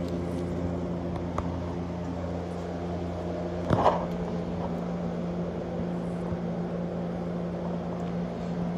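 Steady electrical hum of running reef-aquarium equipment (pumps and protein skimmer), a low even drone with no change in pitch. A short louder noise breaks in a little before halfway.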